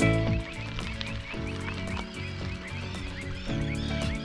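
A flock of greater flamingos calling, many short overlapping croaking calls, over faint background music.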